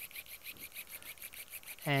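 Arthroscopic shaver with a bone-cutter blade running as it cuts articular cartilage and suctions the fragments into a GraftNet collector, a thin, fast, even pulsing, about ten pulses a second.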